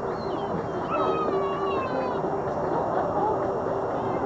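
Background voices of an outdoor gathering, with one high-pitched voice gliding downward for about a second, a little after the start.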